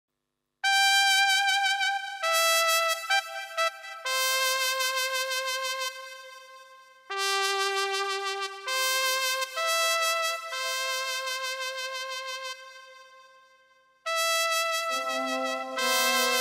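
Yamaha Genos arranger keyboard playing a free-time intro in a solo brass voice: held melody notes in two phrases, each fading away. Lower accompanying notes join near the end.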